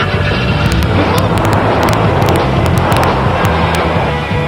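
Background music with a vehicle sound effect over it: a noisy rush that swells in the middle and eases off toward the end.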